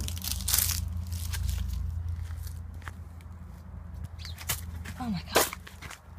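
Rustling and crunching of dry leaves and debris underfoot, with several sharp knocks and a steady low rumble of the phone being handled.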